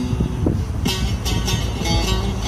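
Live instrumental playing of a Turkish folk tune: a plucked string instrument sounds a run of quick, sharply attacked notes over a steady low rumble.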